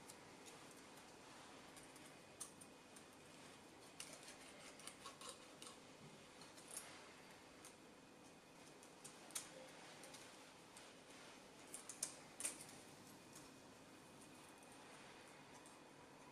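Near silence with faint, scattered light clicks and taps as small hand tools such as a feeler gauge are handled over a cylinder head, with a small cluster about four to five seconds in and another around twelve seconds.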